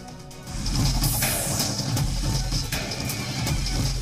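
News programme theme music: a quiet music bed, then about half a second in it jumps to loud, driving music with heavy bass beats and a sweeping whoosh about a second in.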